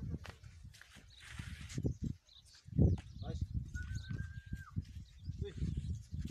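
Indistinct voices mixed with farm animal calls, in irregular bursts. A brief steady high tone about four seconds in.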